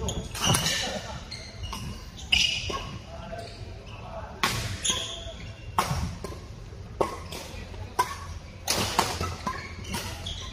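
Badminton rackets striking a shuttlecock, sharp cracks about a second or more apart, ringing in a large hall, with voices in the background.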